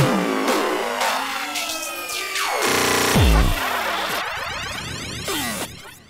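Hardcore techno in a breakdown: the heavy distorted kick drum drops out and synth tones glide upward, the kick returns briefly around the middle, then falling synth sweeps fade away toward the end.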